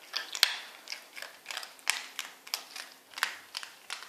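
Yorkshire terrier crunching dry kibble, a quick run of sharp crunches about three or four a second, the loudest about half a second in.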